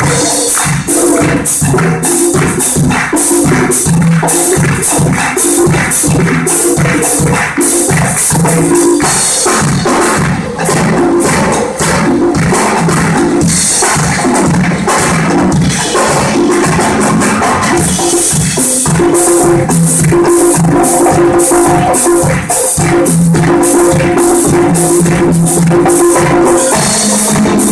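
Live percussion ensemble with brass playing a Latin-style arrangement: congas, timbales and drum kit keep a dense, steady groove under low tuba and trombone notes.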